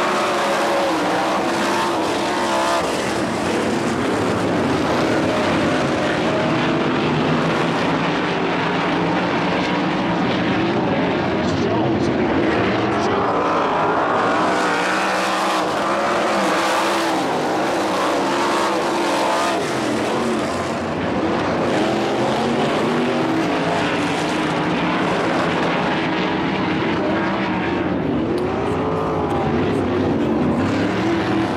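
A field of winged 360 sprint cars racing on a dirt oval, their V8 engines rising and falling in pitch as the cars run through the turns and down the straights.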